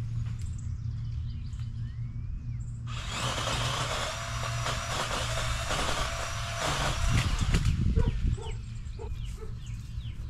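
Battery-powered DeWalt 20V pole saw cutting a tree limb: it starts suddenly about three seconds in, runs for about five seconds and is loudest near the end of the cut, then stops. Birds chirp before and after.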